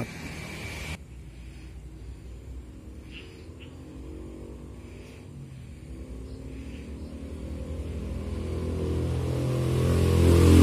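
A motor vehicle's engine running, growing steadily louder over the last few seconds as it comes closer.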